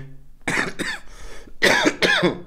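A man coughing in short bursts: two quick coughs about half a second in, then a louder bout near the end.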